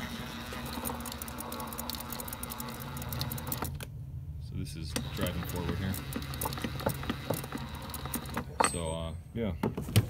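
Lexus IS300 M85 Torsen differential, cover off, its ring and pinion gears spun gently by a power tool on the pinion: a steady motor drone with gear whir that eases off about four seconds in and then runs again, the speaker's both-ways running. It is being turned to spread gear marking compound into a contact pattern for checking backlash.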